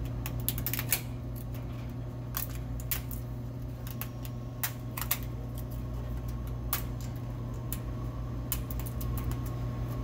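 Scattered small clicks and taps of selection labels being pried out, flipped and pushed back into the front label strip of a Crane vending machine candy tray, over a steady low hum.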